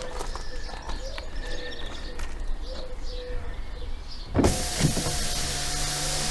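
Steady road and engine noise of a moving car heard from inside the cabin, a hiss with a low hum, cutting in abruptly about four seconds in. Before it, only a faint wavering tone and a few light clicks.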